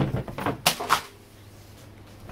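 A sharp thump, then several quick rustles and flaps of crisp lawn fabric being unfolded and spread out by hand, all within the first second.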